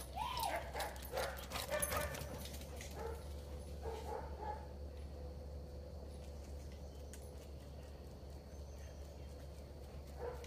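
Dogs at play: a short high yelp right at the start, a flurry of clicks and knocks over the next two seconds, then a few faint yips around the fourth second before it settles to a quiet steady background.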